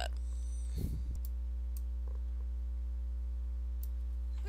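Steady low electrical hum on the microphone. A few faint clicks, typical of a computer mouse being used, and a brief low bump about a second in.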